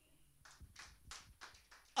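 Faint, light hand clapping from a few people, about half a dozen claps roughly three a second.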